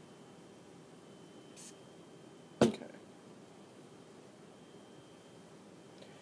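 One short, sharp burst from a hair glossing spray about two and a half seconds in, after a fainter brief hiss about a second and a half in; otherwise quiet room tone.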